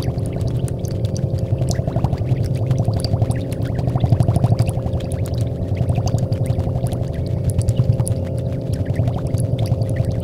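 Experimental drone music: a dense low rumble with a steady held tone above it, sprinkled with a fine crackle of small clicks, its loudness wavering quickly throughout.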